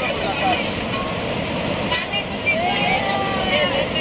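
Steady rush of river water pouring over rocks and a broken weir, with indistinct voices faintly in the background.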